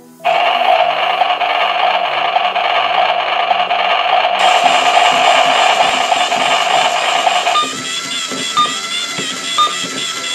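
Small motor of a toy blender whirring steadily, starting right at the beginning and cutting off about seven and a half seconds in, over background music.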